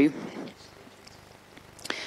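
A woman's voice ends a word, then a pause of quiet room tone through a handheld microphone, with a faint click near the end.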